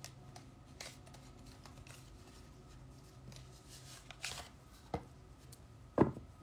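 Oracle card deck being taken out of its cardboard box and handled: soft rustling with a few light clicks and taps, a small cluster about four seconds in and the loudest right at the end, over a faint steady hum.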